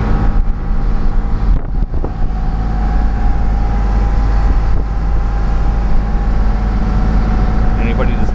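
Lobster boat's engine running steadily under way at harbour speed, a constant low drone heard from inside the wheelhouse.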